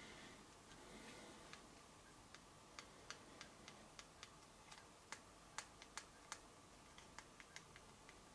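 Faint, sharp clicks at uneven intervals, over a dozen of them, coming most thickly in the middle, against near silence.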